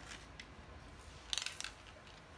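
A toddler handling things on the floor: a brief burst of crackly clicks about a second and a half in.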